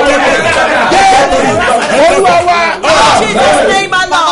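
Several voices shouting aloud at once, overlapping and loud, as in fervent group prayer.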